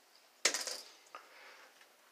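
A sharp clink about half a second in that dies away within half a second, followed by a fainter click a little after one second.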